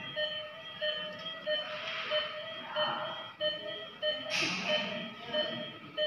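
Medical equipment beeping in a rapid, evenly spaced series of short electronic tones, over plastic crinkling and handling noise that is loudest about four seconds in.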